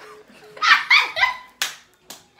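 Girls laughing loudly in a few quick, high-pitched bursts, then a sharp click.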